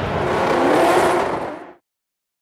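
Drift car engine revving, its pitch sweeping up, then fading out quickly about a second and a half in.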